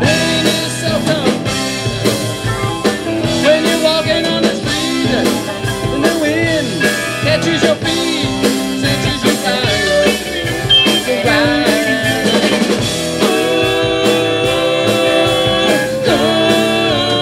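Live rock band playing an instrumental break: electric guitars, bass, drums and keyboards, with a lead line of bending, sliding notes, settling into long held chords in the last few seconds.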